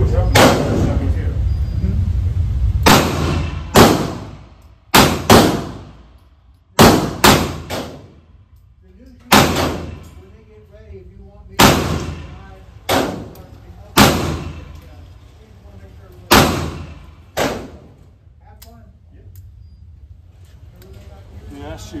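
Gunshots in an indoor shooting range: about fourteen sharp reports at uneven intervals, each with a short echo off the range walls. Among them is a Taurus Tracker .357 Magnum double-action revolver being fired. A steady low rumble sits under the first few seconds.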